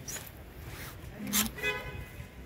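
Hanging clothes rustling and swishing as a hand pushes through them on a rack, with the loudest swish about one and a half seconds in.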